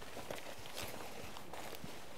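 Faint footsteps of people walking on a dirt track, over a steady hiss of wind.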